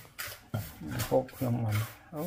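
Short rasping scrapes, about two a second, with a person's voice coming in from about half a second in and running to near the end.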